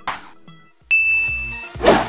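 An editing sound effect: a single bright bell-like ding about a second in, ringing for under a second. It is followed near the end by a short rushing whoosh, the loudest moment, with low background music underneath.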